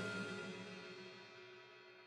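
Background music ringing out on a held chord that fades away.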